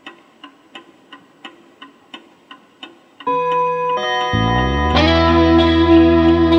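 Intro of a rock song: soft, regular ticking at about three ticks a second. About three seconds in, a loud sustained electric guitar chord breaks in, with bass joining a second later and the full band building near the end.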